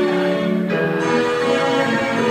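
Instrumental backing music with sustained chords, changing to a new chord a little under a second in; no voice sings over it.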